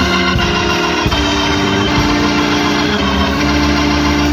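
Church organ playing slow, held chords over a sustained bass, the chords changing every second or so.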